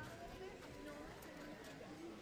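Faint, indistinct murmur of children's and adults' voices in a large hall, with a few light clicks.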